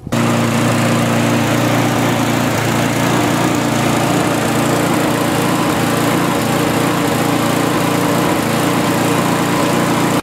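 Mountfield SP470 lawnmower's Briggs & Stratton engine running at a steady speed, after an extra carburettor-to-tank diaphragm was fitted to improve the seal. The owner says it still doesn't run quite as he wants it to.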